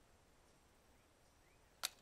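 Near-silent woodland ambience with a few faint bird chirps, then a single sharp click near the end.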